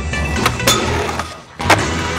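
Skateboard sounds under a music soundtrack: rolling wheels and sharp board clacks. The loudest clack comes near the end, just after a short drop in level.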